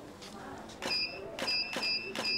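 Camera shutter firing three times in quick succession from about a second in, each shot followed by a short high beep from the studio flash signalling it has recharged.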